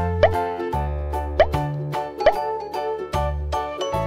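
Cheerful children's background music with a steady beat, overlaid four times by a short rising 'bloop' pop.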